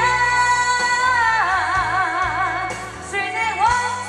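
A woman singing a slow Taiwanese Hokkien ballad into a microphone over a backing track. She holds one long note, plain at first and then with a wide, even vibrato, and starts a new phrase near the end.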